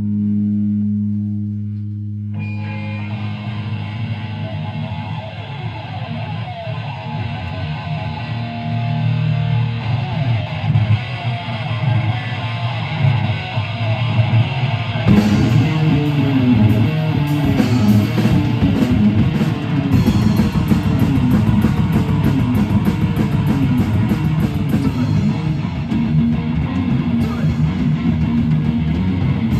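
Live rock band playing loudly, with electric bass, guitars and a drum kit. Held low bass notes open it, the full band comes in about two seconds in, and the drums and cymbals hit harder from about halfway through.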